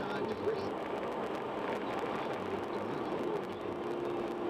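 Steady road and tyre noise of a car cruising at highway speed, heard from inside the cabin, with faint indistinct voices underneath.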